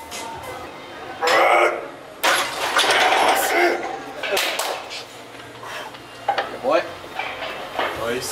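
Loud bursts of people's voices calling out in a gym, with some metallic clinking.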